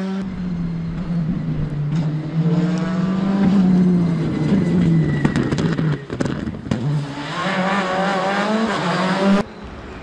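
Rally car engine at full stage speed, its note rising and falling through the gears, with several sharp cracks around the middle as the car passes. Near the end the engine note rises again, then the sound cuts off abruptly to a quieter background.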